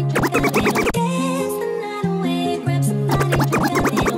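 A DJ mix made in the Cross DJ app: a music track with steady bass notes, broken twice by bursts of rapid scratching, one lasting about a second at the start and another beginning about three seconds in.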